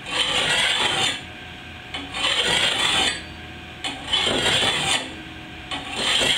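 Coarse bastard file drawn across the steel blade of a garden hoe clamped in a vise, in four long rasping strokes about two seconds apart. The filing is taking nicks out of the edge left by rocks and roots.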